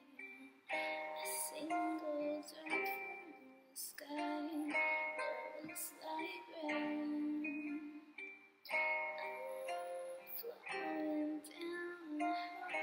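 A woman singing close into a microphone, in sung phrases broken by short pauses for breath.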